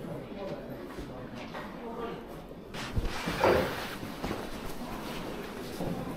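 Indistinct background voices and footsteps in a library hall, with a short low thump about three seconds in.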